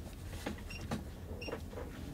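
Nikon D3100 digital SLR giving two short, high electronic beeps as its rear buttons are pressed to change settings, with faint button clicks and handling.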